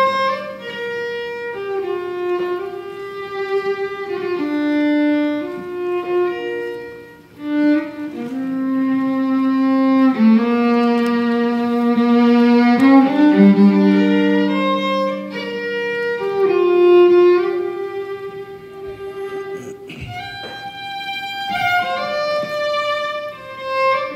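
Fiddle playing a slow Irish air, bowing long held notes that step from one pitch to the next every second or two.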